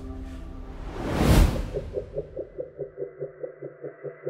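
Sound-design whoosh that swells and fades about a second in, followed by a rapid pulsing electronic hum of about six pulses a second, laid over an animation of a cigar-shaped UFO.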